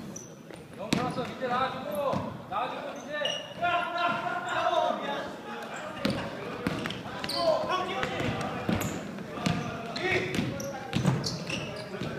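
A basketball dribbled on a hardwood gym floor, sharp bounces coming at irregular intervals, with players' voices calling out, echoing in a large gymnasium.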